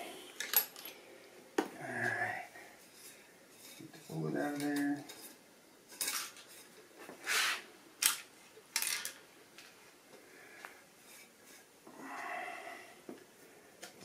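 Small metal clicks and clinks of a Hornady OAL gauge being worked loose and drawn out of a rifle's action after a seating-depth measurement, with a few sharp ticks and a brief scrape in the middle.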